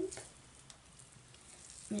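Faint, soft crackling of a wet cardboard toilet paper roll being squeezed and shaped in the hands.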